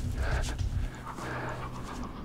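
A man panting hard, two heavy breaths, out of breath from exertion at high altitude, with a low rumble under the first second.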